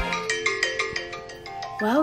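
Smartphone alarm ringing: a quick run of short, bell-like electronic notes that gets quieter toward the end.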